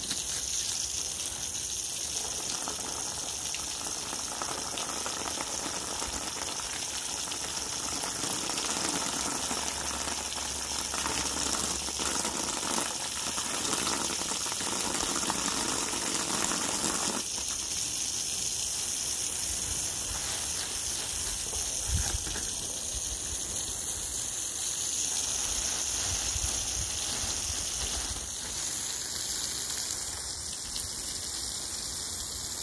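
Water from a garden hose splashing steadily onto soil and plants in a garden bed; the splashing grows thinner suddenly about seventeen seconds in.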